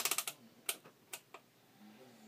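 Handheld multimeter handled and set for a voltage check: a quick run of sharp plastic clicks at the start, typical of the rotary selector switch being turned, then a few single clicks over the next second and a half.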